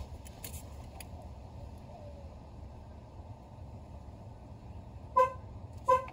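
2009 Chevrolet Silverado's horn chirping twice in quick succession near the end. It is the signal that the tire pressure monitor system has entered relearn mode after the lock and unlock buttons were held down.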